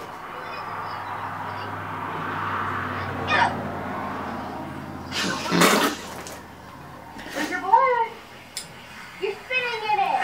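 Sound of a played-back video clip: a steady rush of noise like running water for about five seconds, a sudden loud burst about five and a half seconds in, then short rising-and-falling voice cries.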